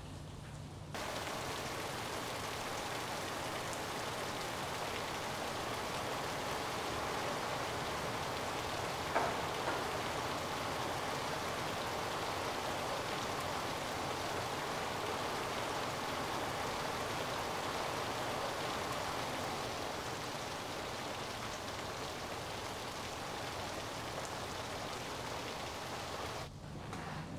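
Steady, heavy monsoon rain, coming in suddenly about a second in and then holding even, with one short tap about nine seconds in.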